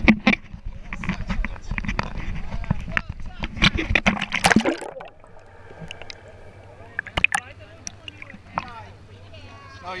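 Sea water sloshing and splashing around a waterproof camera held at the surface, with people talking nearby. About halfway through the sound turns muffled and quieter as the camera goes under water, leaving a steady low hum.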